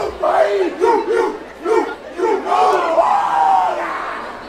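A group of voices chanting and calling out together in short, rhythmic shouts, about three a second, followed by longer held calls near the end.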